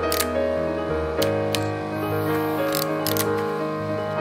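Several sharp clicks from a Yashica digiFilm Y35 toy camera being handled, over background music with sustained keyboard-like tones.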